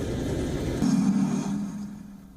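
Armored military vehicle engine running as a low rumble. Just under a second in it changes abruptly to a louder, steadier drone, which fades away near the end.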